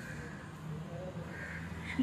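Faint outdoor background with a faint bird call about three quarters of the way through.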